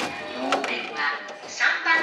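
Japanese railway public-address announcement naming track 3 ("3番線"), with music playing behind it.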